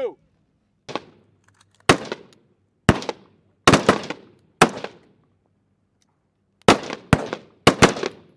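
Rifle fire: about nine single 5.56 mm rifle shots, each a sharp crack, spaced irregularly from half a second to two seconds apart, with a couple of quick pairs. These are aimed shots fired on command during a qualification course of fire.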